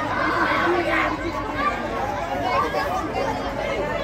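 Crowd chatter: many voices talking and calling out over each other without a break, from riders on a swinging pirate-ship ride.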